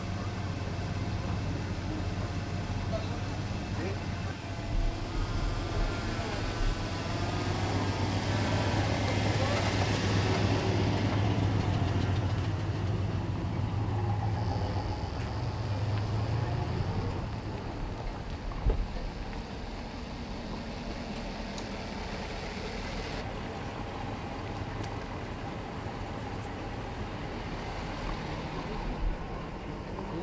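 Engines of police pickup trucks and a van running as the vehicles drive slowly past. A steady low engine hum builds to its loudest around ten seconds in, then fades by about seventeen seconds. A single sharp knock comes a little past halfway.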